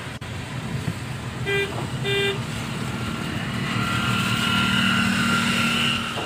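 Car horn giving two short toots, about half a second apart, heard over the steady engine and road noise inside a car's cabin on a wet road. In the second half a steady whine grows slightly louder.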